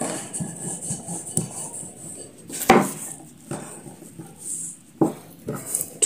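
Wooden rolling pin rolling scone dough out on a wooden table, with a few sharp knocks of wood on the tabletop, the loudest about halfway through.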